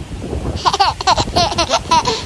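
Wind buffeting the microphone with a low rumble, and a woman laughing in a run of short bursts from about half a second in.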